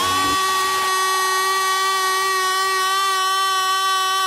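Breakdown in a house/techno DJ mix: the beat drops out and a single buzzy synthesizer note is held steady, with no drums under it.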